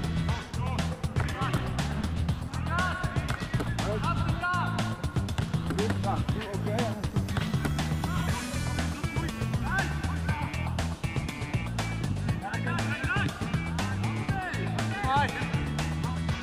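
Background music: a song with a steady beat, a repeating heavy bass line and a singing voice.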